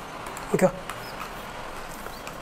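Pause in a spoken lecture: one short spoken "okay" about half a second in, otherwise only steady background hiss of the room and microphone.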